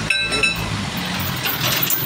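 Motor vehicle engine idling steadily, with a short high ring at the start and a few light clicks near the end.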